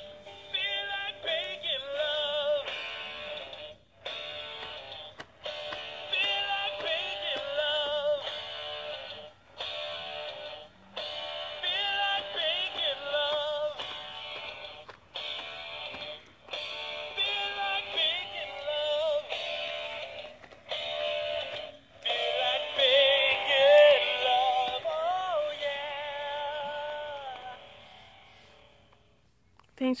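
Gemmy animated Bacon Love Pig plush toy playing its built-in song: a sung melody with accompaniment in phrases with short pauses, thin and tinny, fading out near the end.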